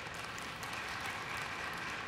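A large audience applauding steadily, an even clatter of many hands.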